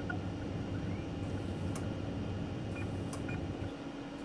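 A low, steady hum with a few faint, short high beeps and ticks over it.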